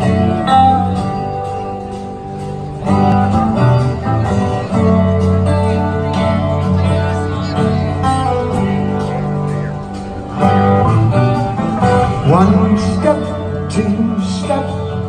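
Live rock band playing through a PA, electric guitars to the fore over drums and bass, heard from among the audience. Sliding, bending guitar notes come in near the end.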